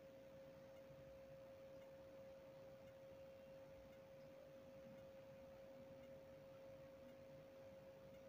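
Near silence, with only a faint steady single-pitched hum that does not change.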